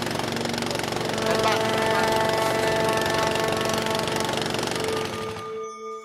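Boat engine running steadily with a fast, even chugging, under music with long held notes; the engine cuts off suddenly about five and a half seconds in, leaving the music alone.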